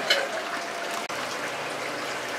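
Water trickling and sloshing in a plastic bucket as bags of fish are emptied into it by hand, a steady watery noise with a faint click or two.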